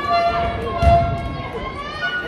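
A wrestler's body slammed onto the ring mat: one heavy thud about a second in, over spectators shouting.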